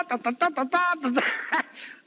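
A man's voice talking animatedly, with a short breathy outburst about a second in, as he grins and laughs.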